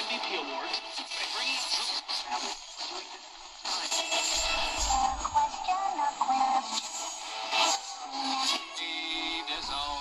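AM broadcast audio from the small speaker of a Horologe HXT-201 pocket radio as it is tuned across the band: snatches of music and talk change every few seconds, thin with almost no bass.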